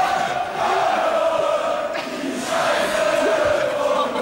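Large crowd of ice hockey fans in an arena chanting in unison, a sustained sung chant held on one pitch, with a short break about two seconds in.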